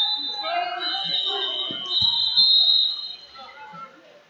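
Referee's whistle blowing long, steady blasts, with a second whistle at a lower pitch overlapping, over voices in the hall. The blasts stop the action on the mat, and a thump comes about two seconds in.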